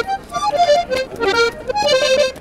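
Accordion playing a quick run of short notes that step up and down in pitch.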